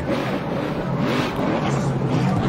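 NASCAR race truck's V8 engine revving up and down during a celebratory burnout, rear tyres spinning on the pavement.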